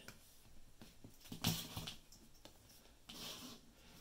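Quiet handling noise of wire leads with plastic XT60 connectors being picked up and moved in the hands: a soft rustle about a second and a half in and a fainter one near the end.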